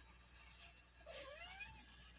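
A domestic cat gives a single short, quiet meow about a second in, its pitch rising toward the end.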